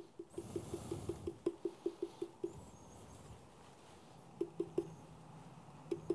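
Small handheld metal mesh sieve tapped lightly and rapidly, about five taps a second, to dust powdered sugar. The tapping stops about two and a half seconds in, and a few more taps come near the end.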